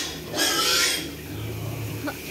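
Wild boar squealing: one loud, harsh squeal about half a second in, lasting about half a second, as the boar mounts a sow, followed by a quieter low grunt-like sound near the end.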